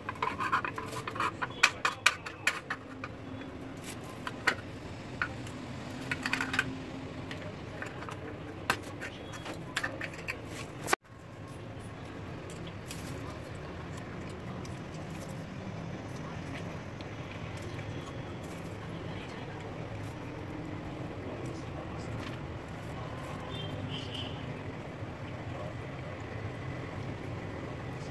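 Handling of a pickle jar and its lid on a kitchen counter: a run of sharp clicks and knocks over the first ten seconds or so. After a sudden break there is only steady low background noise while a spoon is worked in the jar.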